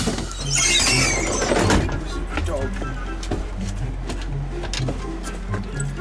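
A school bus's entry door opening at the push of a dashboard switch: a rush of noise lasting about a second and a half, over background music.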